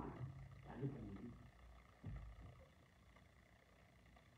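A man's low voice speaking briefly and trailing off, then a soft low thump about two seconds in, followed by near silence.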